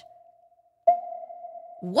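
Submarine sonar ping sound effect: a single steady tone that rings and fades, the tail of one ping dying away and a second ping striking about a second in.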